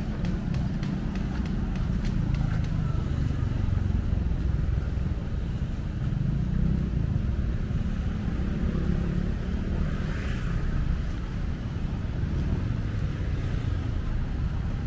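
Street traffic ambience: a steady low rumble of cars and motorbikes on the beach road, with a faint swell of a vehicle passing about ten seconds in.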